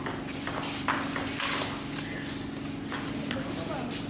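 Table tennis ball clicking as it is struck by rubber paddles and bounces on the table during a rally: a string of sharp, irregular clicks over the first second and a half, the loudest about a second and a half in, then a couple more near three seconds.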